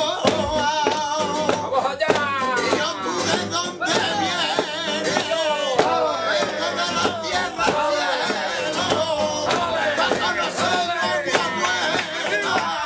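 Live flamenco cante: a male singer's voice in long, wavering, ornamented lines over flamenco guitars strumming and rhythmic handclaps (palmas).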